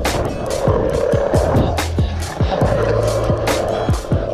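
Skateboard wheels rolling on a concrete skatepark bowl with a steady rumble, while music with a steady, fast beat plays over it.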